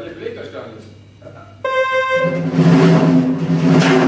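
Live keyboard-and-drums jazz: after a sparse, quiet opening, a sharp held keyboard tone cuts in about one and a half seconds in. It gives way to a loud, low sustained chord with a bright cymbal-like wash over it.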